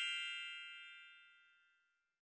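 The ringing tail of a bright, bell-like chime sound effect marking a title-card transition, fading out about a second in.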